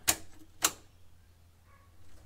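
Car ignition key switch turned on, giving two sharp clicks about half a second apart.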